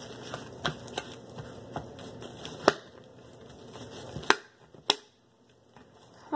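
Homemade glue-and-shaving-cream slime being squeezed and kneaded by hand, with scattered sharp clicks and pops, about six, the loudest two near the end.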